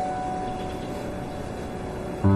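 Soft drama score on a single held note, over a steady low hum of street traffic.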